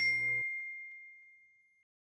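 A single bright 'ding' notification-bell sound effect that rings on one clear tone and fades out over nearly two seconds; background music underneath stops about half a second in.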